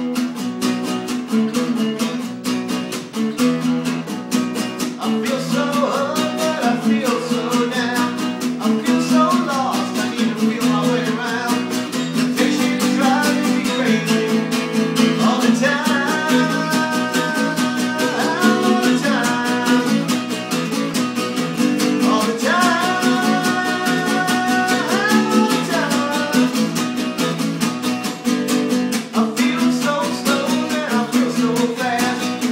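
Acoustic guitar strummed steadily in chords, with a man singing over it; his voice comes in a few seconds in and carries on, with long held notes.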